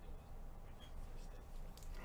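A few faint, short clicks and light rustling of trading cards being handled and shuffled on a table, over a low steady room hum.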